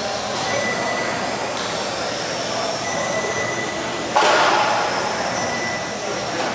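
High-pitched whine of 1/12-scale electric RC cars' brushless motors and gearing as they race on carpet, over a steady hall noise. A sudden loud noise about four seconds in fades over about a second.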